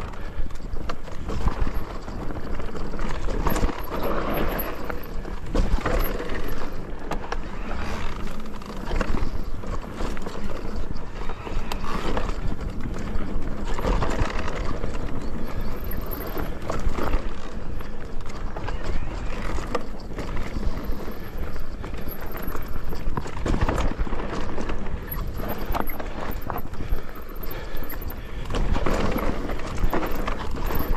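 Mountain bike riding down rough off-road singletrack. The tyres roll over dirt and roots, and the bike rattles and knocks irregularly over the bumps.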